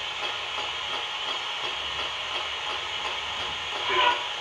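Ghost box (spirit box) radio sweeping through stations, giving a steady hiss of radio static.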